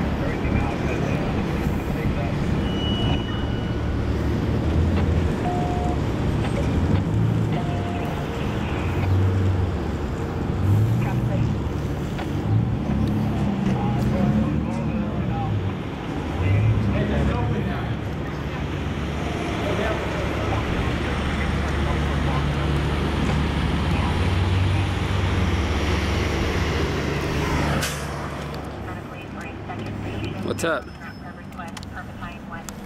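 Indistinct low male voices over a steady rumble of vehicle traffic.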